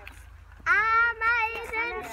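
A child singing loudly in long, high held notes, starting about two-thirds of a second in.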